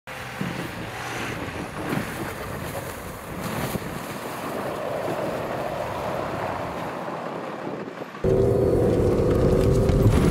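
Wind rushing over the microphone with a Cummins diesel Ram 2500 pickup running through snow faintly beneath it. About eight seconds in it cuts abruptly to the much louder, steady drone of the truck's engine heard from inside the cab.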